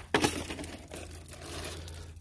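Thin plastic water jugs crinkling and knocking as they are handled, with a sharp crackle just after the start and softer crinkles after it.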